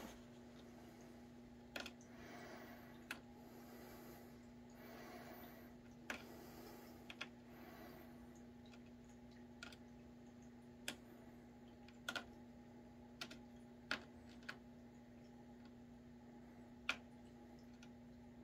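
Near silence with a steady low hum and about a dozen light, scattered clicks and taps, the loudest near the end.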